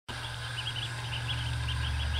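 A brood of ducklings peeping: short, high chirps, several a second, over a steady low rumble.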